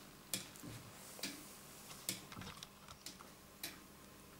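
A Meccano clock's foliot-and-verge escapement ticking faintly: the quarter-inch bolt teeth of the escape wheel catch and release on spring-clip pallets. There are four or five sharp ticks, about one a second.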